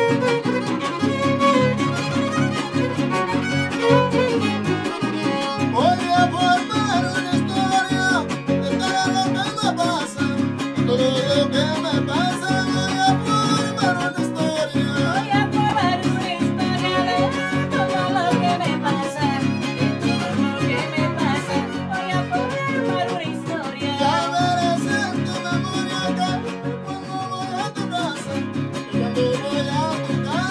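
A trío huasteco playing a son huasteco live. A violin carries a sliding melody over steadily strummed jarana huasteca and huapanguera.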